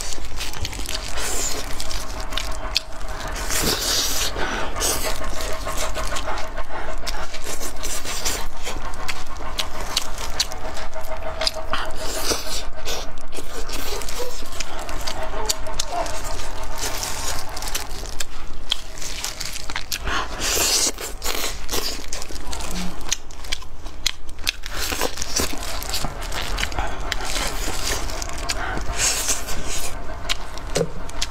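Close-miked mukbang eating sounds: chewing and tearing freshly stewed meat off large bones, with wet mouth clicks, crackles and smacking.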